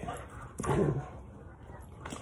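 A dog makes one short vocal sound about half a second in.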